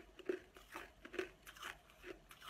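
Frozen ice being bitten and chewed in the mouth, crisp crunches coming about twice a second.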